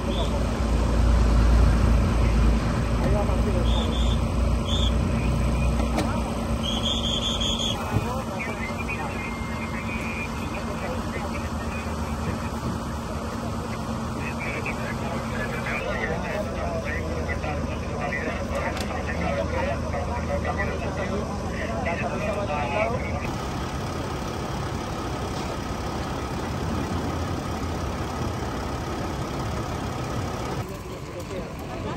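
A vehicle engine idles steadily, with a heavier low rumble in the first several seconds, under indistinct voices of the rescue crews.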